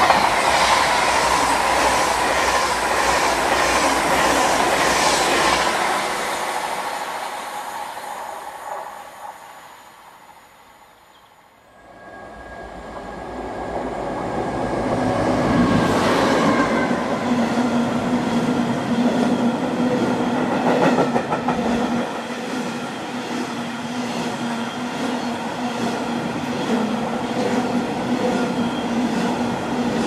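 An Avanti West Coast Class 390 Pendolino electric train passing close at speed, its wheels clicking rapidly over the rail joints before the noise fades away about ten seconds in. Then a freight train rises in: Class 60 diesel-electric locomotive 60062 passes, loudest a few seconds later, followed by a long string of hopper wagons rumbling steadily past.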